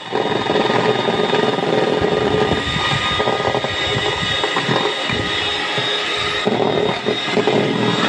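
Electric hand mixer running steadily, its beaters whipping egg whites in a plastic bowl as sugar is spooned in for a meringue.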